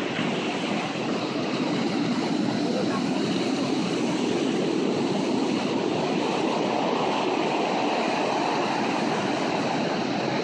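Steady wash of surf breaking on a sandy beach, mixed with wind rumbling on the microphone, even in level throughout.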